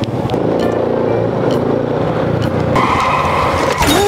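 Motor scooter engine running steadily. About three seconds in, a steady high tone sounds for about a second. It is cut off by a sudden crash as a bicycle runs into the scooter.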